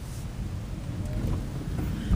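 Steady low rumble of road and tyre noise inside the cabin of a moving Toyota Prius.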